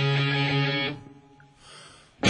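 Rock band recording: a guitar chord rings and fades out about a second in, leaving a short, nearly quiet break in the song with a faint hiss near the end.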